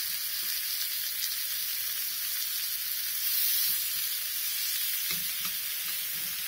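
Thin soy-and-egg-dredged beef slices sizzling steadily in a frying pan, with a couple of faint clicks.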